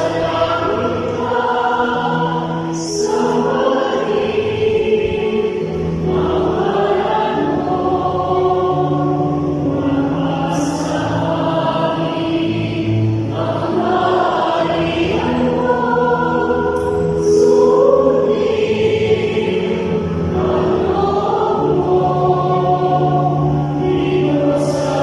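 Mixed choir of men, women and children singing a hymn to electronic keyboard accompaniment, in long held phrases that break every few seconds.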